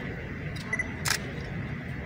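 A camera shutter clicks once about a second in, just after a faint short double beep, over steady room noise.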